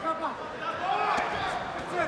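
Mostly voices: a man's speech trails off at the start, then one drawn-out shout rises and falls about a second in, over a low murmur of a crowd in a large hall.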